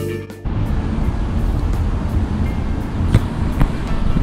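Guitar background music cuts off about half a second in, giving way to a steady outdoor rumble of road traffic.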